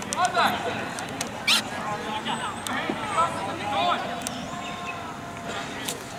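Children's high voices calling and shouting across a youth soccer pitch in short rising-and-falling cries, with a sharp knock about one and a half seconds in.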